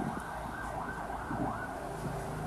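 A distant siren-like tone rising and falling several times over a steady low rumble.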